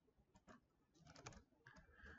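Faint computer keyboard keystrokes: a single tap about half a second in, then a short run of taps just after a second.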